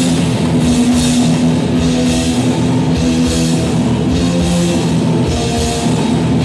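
A heavy metal band playing live and loud: distorted electric guitars hold low chords over fast drumming, with repeated cymbal crashes.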